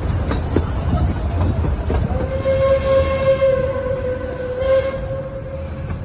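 Steam locomotive whistle sounding one long steady note for about three seconds, starting about two seconds in, over the rumble and clatter of the small steam train's carriages running on the track.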